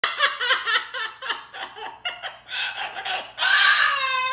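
Moluccan cockatoo laughing: a run of short, quick ha-ha calls, about three to four a second, breaking into one longer, louder call near the end.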